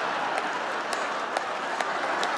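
Large audience applauding, a steady wash of clapping.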